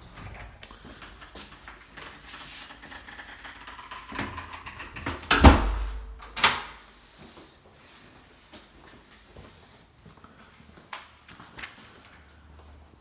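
A door shutting with a thud about five seconds in, followed by a second, sharper knock about a second later. Before and after come faint handling noises and small clicks.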